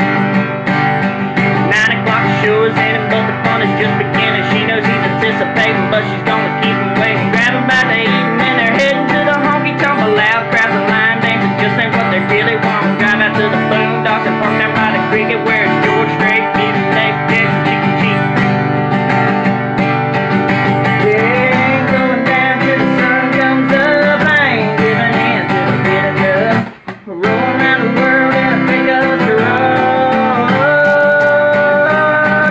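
Acoustic guitar strummed steadily, playing a country song, with a man singing over it. The playing breaks off for a moment about 27 seconds in, then resumes.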